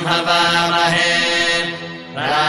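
A voice chanting a Hindu mantra in long, held phrases over a steady low drone, falling away briefly near the end.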